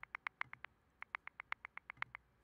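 Faint, rapid clicking of computer controls while a file list is stepped through, about eight clicks a second with a brief pause just under a second in.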